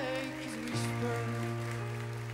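Slow piano ballad accompaniment between sung phrases: held chords over a steady bass note, moving to a new chord a little under a second in.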